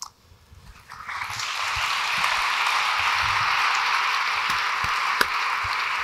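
Audience applauding, beginning about a second in and building quickly to a steady level.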